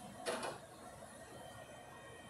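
A brief rustle of an RC car and its cardboard box being handled, about a quarter second in, then faint room tone.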